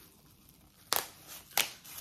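Two sharp pops about two-thirds of a second apart, the first slightly louder: something being deliberately popped.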